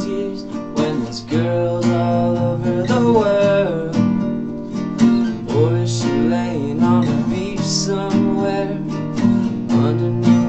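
Two acoustic guitars strummed and picked in a steady rhythm, a steel-string acoustic and a nylon-string classical, with a male voice singing over them between lyric lines.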